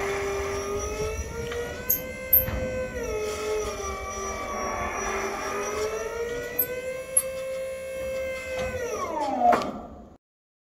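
Hydraulic pump motor of a trailer's flip-top tarp system running with a steady whine that sags and rises gently in pitch as the load changes, with a few sharp clicks. About nine seconds in, the whine falls steeply in pitch and stops as the motor is switched off.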